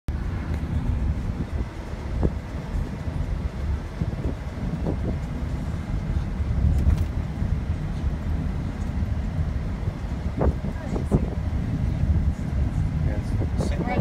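Road and engine noise inside a moving car's cabin: a steady low rumble, with a few light knocks scattered through it.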